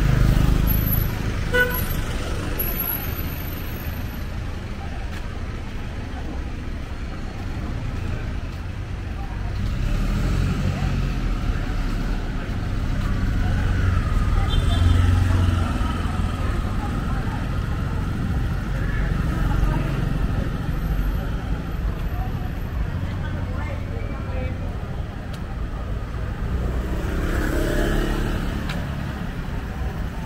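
Street traffic: a steady low rumble of motorbike and auto-rickshaw engines going by, louder around the middle, with voices of people on the street.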